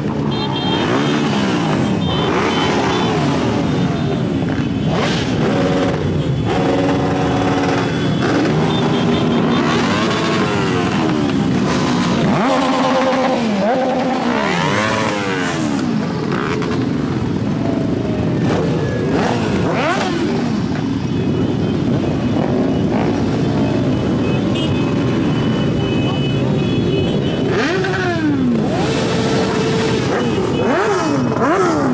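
A large pack of motorcycles running and revving together, many engine notes rising and falling over one another as the bikes pull away. A few short, steady held tones break through.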